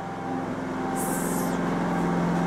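A generator running with a steady hum, and a brief hiss about a second in.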